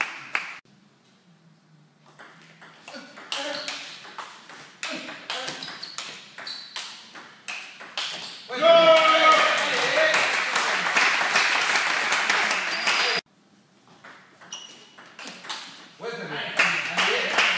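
Table tennis rally: the ball clicks sharply off the bats and the table in quick irregular alternation. About eight seconds in comes a loud shout, then several seconds of shouting and cheering after the point ends, which cuts off abruptly. A new rally's clicks start near the end.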